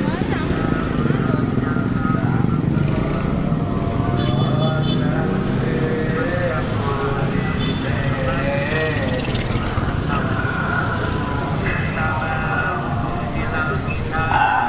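Street traffic, mostly motorcycle engines running, with people's voices over it.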